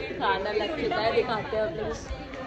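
People talking to each other, only speech, with no other sound standing out.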